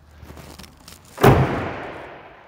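A pickup tailgate slammed shut: one heavy thump about a second in, echoing briefly as it dies away.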